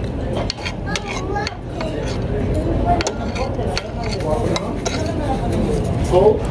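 Restaurant dining-room clatter: scattered short clinks and clicks of dishes and cutlery over a steady room murmur with faint background voices.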